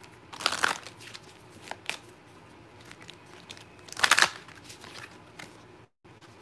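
Oracle cards being handled and drawn from the deck by hand: two short bursts of card rustling, one about half a second in and a louder one about four seconds in, with a few light clicks between.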